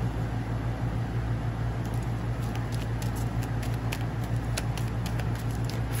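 Holographic tarot deck being shuffled by hand: a soft patter of cards sliding against each other with scattered light clicks, over a steady low hum.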